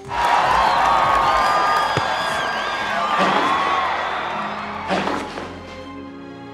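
Trailer music under a loud crowd cheering and whooping, which dies down after about four and a half seconds; the music carries on more quietly.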